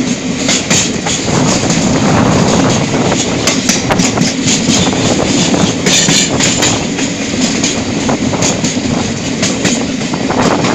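Train running, heard from aboard: a steady rumble of wheels on the rails with frequent sharp clicks and rattles over a rushing noise.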